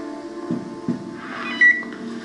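Film soundtrack through a television: held score notes fading away, two soft knocks, then a short high electronic beep, the loudest sound.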